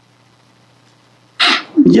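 Quiet room tone with a low steady hum. About one and a half seconds in comes a short, loud burst of breath from a man, just before he speaks.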